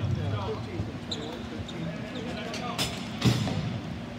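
Ball hockey play: sticks and ball knocking on the rink surface amid players' shouts, with a sharp crack about three seconds in, the loudest sound, as a goal is scored.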